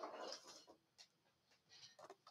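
Near silence: room tone, with a faint brief rustle at the start and one faint click about a second in.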